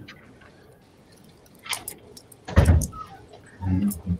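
Hands handling a gold-tone metal link bracelet: a light click a little under two seconds in, then a louder knock about two and a half seconds in. A brief murmur of voice comes near the end.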